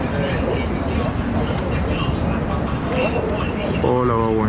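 Steady low background rumble, like distant traffic, with faint, indistinct voices talking.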